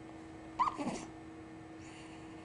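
A four-month-old baby's brief squeak, falling in pitch, about half a second in, made with a spoon in her mouth. A faint steady hum runs underneath.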